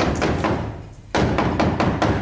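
Heavy knocking on a wooden door: rapid blows in two loud bouts, the second starting about a second in.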